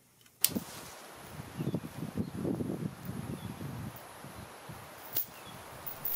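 Irregular rustling and crunching of branches and forest-floor debris as someone moves among a fallen evergreen, busiest in the middle. A sharp click about half a second in as the sound begins, and another near the end.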